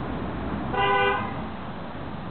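A single short car horn honk, about half a second long, near the middle, over a steady background rumble.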